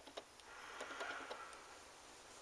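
Faint soft ticks and a light rustle of cats moving about on a carpeted cat tree, one of them pushing its head into a hole in the platform.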